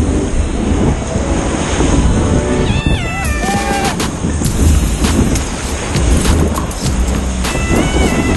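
Whitewater rushing and spraying around a paddleboard-mounted action camera riding a breaking wave: a loud, steady rush with a low rumble. Background music plays under it, and two short whining calls with sliding pitch stand out, about three seconds in and near the end.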